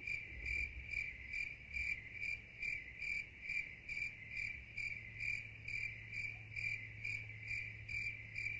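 Cricket chirping in a steady, even rhythm, a little over two pulses a second, over a faint low hum. It starts abruptly.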